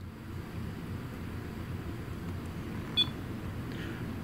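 A REM pod gives one short, high electronic beep about three seconds in, over a steady low hum. It answers a request to touch the device, which the investigators take as spirit interaction.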